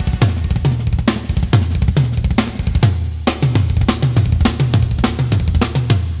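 Studio recording of a fast drum solo on a kit with two bass drums: rapid, even double-bass-drum runs woven between snare and tom strokes, with cymbals, in a dense stream of notes.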